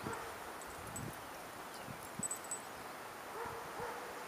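A few faint, short dog vocalizations over a quiet background: one right at the start and a couple more near the end.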